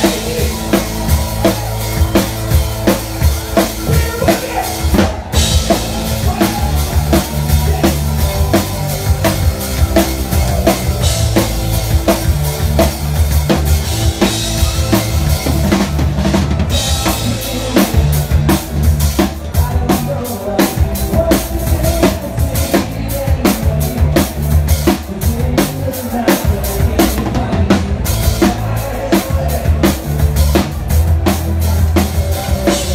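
Loud live band music: a drum kit keeping a steady beat over a heavy bass line.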